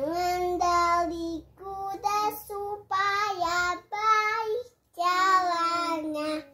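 A young girl singing an Indonesian children's song unaccompanied, in several short phrases with brief pauses for breath.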